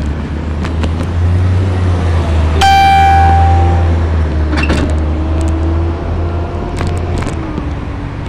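Street traffic with a steady low rumble, cut across by one horn blast lasting about a second, starting about two and a half seconds in. Scattered short clicks and rattles come through as well.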